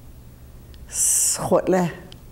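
Speech: a woman saying a single Salish word, the name for a white-tailed buck, with a long hissing 's' sound followed by a short syllable falling in pitch.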